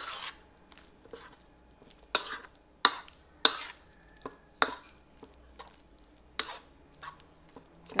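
Metal spoon stirring a thick mix of flaked fish, egg and flour in a plastic bowl. The spoon gives irregular sharp knocks and scrapes against the bowl every second or so.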